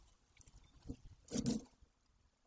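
A brief scraping rustle about one and a half seconds in, with a smaller one just before: the golden eaglet's downy body brushing against the nest camera.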